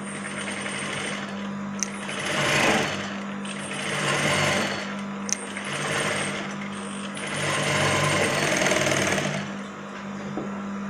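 Juki industrial lockstitch sewing machine stitching through net fabric in four short runs, with its motor humming steadily between them. Two sharp clicks fall between the runs.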